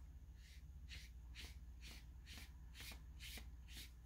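Watercolour brush stroking back and forth across paper: a run of about eight faint swishes, roughly two a second.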